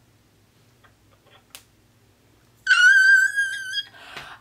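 A woman's high-pitched squeal of joy, held for about a second near the end, after a quiet stretch with one faint click.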